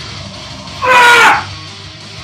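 A man's loud yell of effort, lasting about half a second and falling slightly in pitch, about a second in, as a heavy barbell front squat is driven up from the bottom. Guitar music plays underneath.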